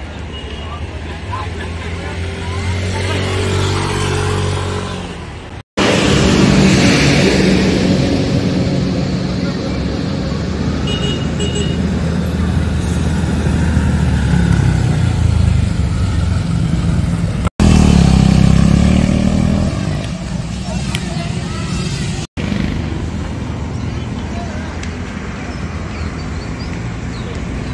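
Motorcycle engines running, with people talking over them. The sound drops out for an instant three times.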